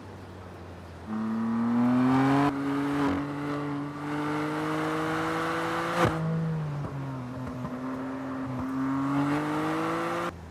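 BMW M3's twin-turbo straight-six engine under hard acceleration on track: the note comes in loud about a second in and climbs steadily in pitch, drops at a sharp crack of an upshift about six seconds in, then climbs again.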